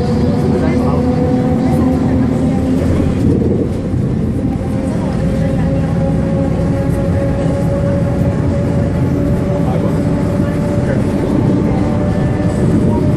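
Interior noise of a Van Hool articulated city bus under way on a highway: a steady engine and drivetrain drone over tyre and road noise, with a held whine that rises slightly in pitch.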